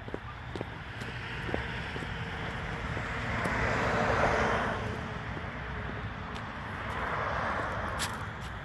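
Road traffic passing by: a car and an ambulance drive past, their tyre and engine noise rising to its loudest about four seconds in and then fading. A second, softer pass-by comes near the end. The ambulance is not sounding a siren.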